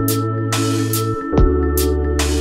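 Lofi hip-hop instrumental: a laid-back beat of kick drum and snare/hi-hat hits over sustained bass and mellow chords, with the bass moving to a new note about a second and a half in.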